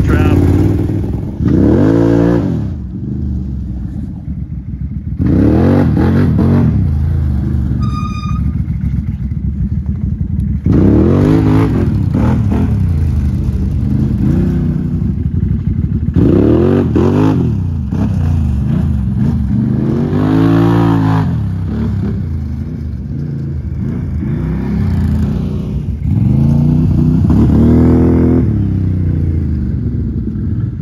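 Can-Am ATV V-twin engines revving again and again, each rev rising and falling in pitch every few seconds between spells of lower running. A brief high-pitched beep sounds about eight seconds in.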